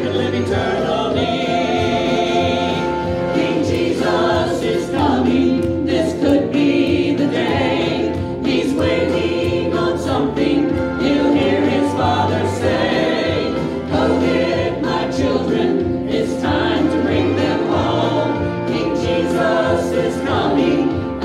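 Choir singing a gospel song with instrumental accompaniment, the voices held over sustained bass notes.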